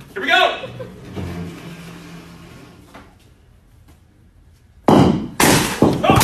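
A ball striking hard with a sudden loud bang about five seconds in, a second hit half a second later, then loud shouting from the room.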